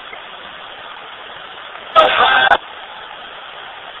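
Ghost box radio scanning through FM stations, giving a steady hiss of static. About two seconds in, a loud, brief scrap of broadcast voice breaks through.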